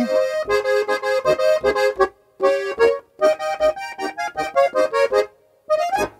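Steirische Harmonika (Styrian diatonic button accordion) playing a quick folk melody in short phrases, with brief breaks about two and three seconds in. The playing stops a little after five seconds, and one short chord follows near the end.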